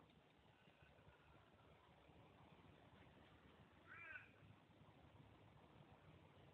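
Near silence, broken once about four seconds in by a faint, short call that rises and falls in pitch.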